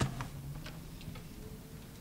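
A few light clicks and knocks from equipment being handled, the loudest right at the start and the rest sparser, over a faint steady hum.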